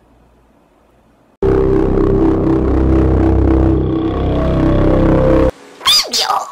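Quiet for about a second and a half, then a loud droning outro sting starts suddenly, a low rumble under held tones, and cuts off abruptly about four seconds later.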